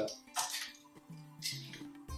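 Quiet background music, with two brief light clatters about half a second and a second and a half in as a plastic yogurt pot and spoon are handled.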